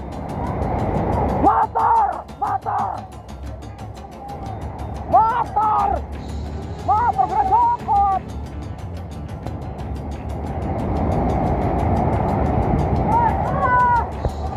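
Fast muddy floodwater rushing steadily, swelling and easing. Men's voices shout over it in short calls a few times: about a second and a half in, around five and seven seconds, and near the end.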